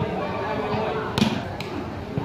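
A volleyball struck hard by hand, one sharp slap a little past halfway with a fainter knock just after it, over the steady chatter of spectators.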